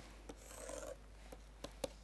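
Faint scratch of a stylus drawing across a pen tablet, followed by a few light ticks of the pen tip striking the surface near the end.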